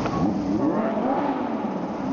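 A car engine revving, its pitch rising and falling over a couple of seconds.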